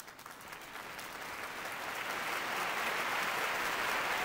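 Recorded applause effect fading in, growing steadily louder.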